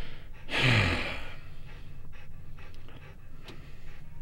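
A dog panting, with a heavy, exasperated sigh falling in pitch about half a second in.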